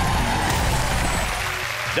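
A broad rushing whoosh, a transition sound effect under the animated glitter-ball ident, slowly fading away.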